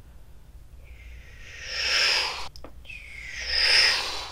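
Two breathy whooshes, each swelling and fading over about a second, the second near the end: flying sound effects made by mouth while an action figure is swooped through the air.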